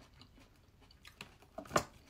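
A crisp red grape bitten and chewed: quiet at first, then a few sharp crunches from about a second in, the loudest just before the end.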